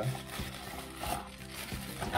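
Plastic wrap and cardboard packaging rustling as they are pulled from a box, over quiet background music with sustained low notes.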